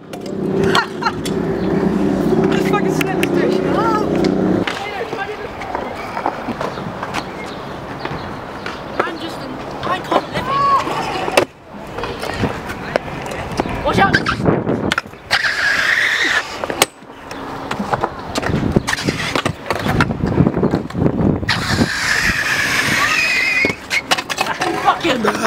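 Stunt scooter wheels rolling on smooth concrete, with repeated sharp clacks of the deck and wheels hitting the ground, in several short pieces broken by sudden cuts. A steady hum runs under the first few seconds.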